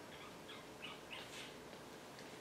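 Faint dry-erase marker squeaking on a whiteboard in a few short strokes while writing.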